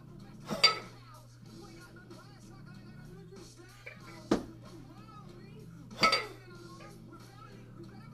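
A pair of 12 kg kettlebells clanking together as they are lowered into the rack position between jerks. It happens twice, about five and a half seconds apart, each clank with a short metallic ring. A sharper single knock comes shortly before the second one.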